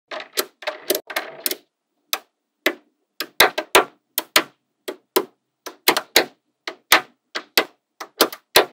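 Small magnetic balls clicking as they snap onto a block built of magnetic balls: a rattling run of clicks as a chain of balls is laid down, then single sharp clicks about two a second as more balls are pressed on.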